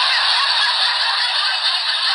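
Canned crowd laughter sound effect, a studio audience laughing together. It starts abruptly just before and sounds thin, with no bass.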